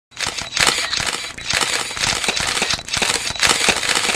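Rapid, dense clicking and snapping over a hiss, a sound effect of many camera shutters firing at once. It starts abruptly.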